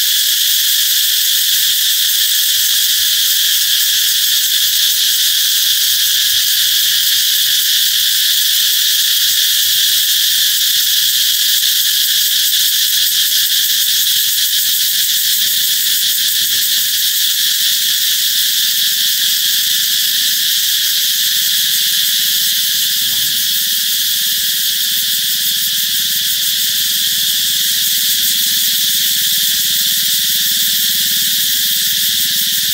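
Cicadas singing: a loud, steady, shrill buzzing drone that never breaks.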